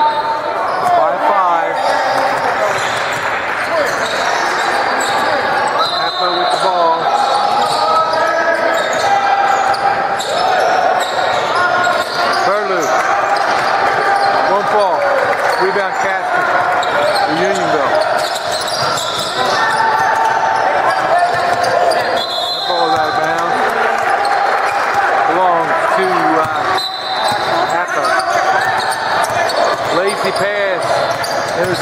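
A basketball bouncing on a hardwood gym floor as it is dribbled up the court, with players' and spectators' voices going on throughout.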